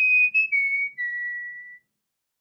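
A short whistled intro jingle: a few clear notes stepping up and back down, ending on a long held lower note that cuts off abruptly.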